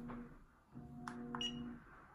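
Two clicks and a short high beep about a second in: the hair flat iron's temperature buttons being pressed while it is set for styling. Faint background music with held notes runs underneath.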